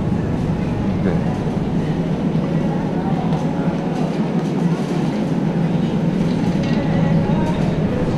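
A wire shopping trolley rolling across a hard store floor, its wheels and basket giving off a steady low rattling rumble.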